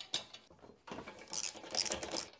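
Spark plug lead cap pulled off a Kohler OHV mower engine, then light metal clicking and scraping as the spark plug is worked loose with a plug spanner, in short quick bursts from about a second in.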